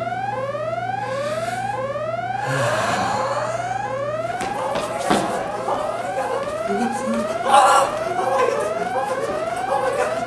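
Whooping self-destruct alarm: a rising siren tone that repeats about one and a half times a second. Two short noisy bursts break through it, the louder one about seven and a half seconds in.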